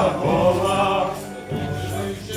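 A Polish folk band playing a devotional song as dance music: several voices singing together over double bass, the singing easing off about halfway through while the bass carries on.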